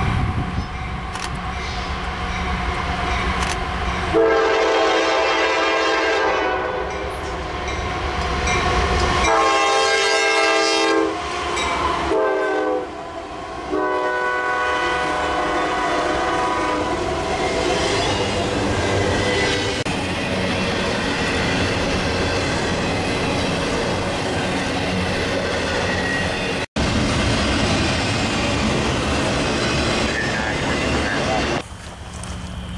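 Norfolk Southern diesel freight locomotives approaching with their engines running, then the lead unit's air horn sounding the grade-crossing signal about four seconds in: long, long, short, long. The locomotives and intermodal cars then roll past close by with steady wheel-on-rail noise.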